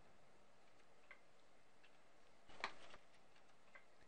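Microsoft Excel's Modern feedback sound for inserting cells: one short, soft cue about two and a half seconds in, confirming the insert. A faint click comes about a second in.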